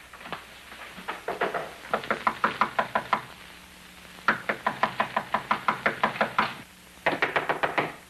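Rapid knocking, about six knocks a second, in three runs of one to two seconds each with short pauses between.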